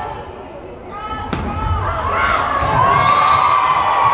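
Volleyball rally on a gym floor: a sharp smack of the ball about a second in, sneakers squeaking on the court, and spectators' voices and cheers growing louder.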